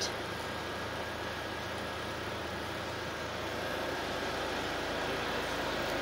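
Chevrolet Captiva idling: a steady, even hum with a faint high tone over it, growing slightly louder after about four seconds.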